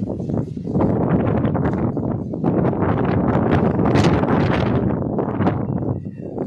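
Strong gusty storm wind buffeting the microphone: a loud, low rushing that swells and eases, with a strong gust about four seconds in.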